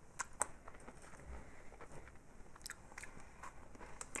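Faint chewing of a chocolate-covered cookie, with a few short crunchy clicks spread through it.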